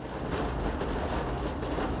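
Steady rush of open-air city noise high above the streets, wind on the microphone mixed with distant traffic rumble. It drops away at the end.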